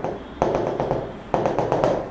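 A pen tapping and stroking on a board surface while dashed lines are drawn: a few separate short taps, each starting sharply.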